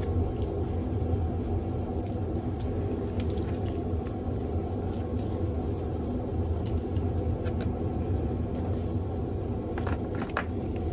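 A steady low rumble, with faint scattered clicks and rustles of tweezers handling small paper cutouts.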